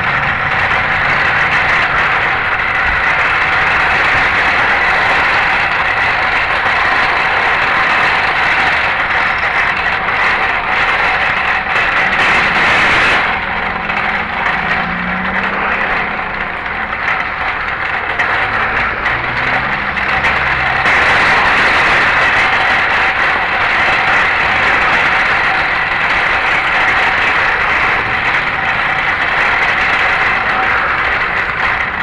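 Shopping cart being pushed over parking-lot asphalt, a loud steady rattle of its wheels and wire frame. It eases off about halfway through and picks up again a few seconds later.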